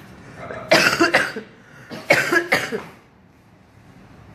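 A woman coughing in two short bouts, about a second in and again about two seconds in.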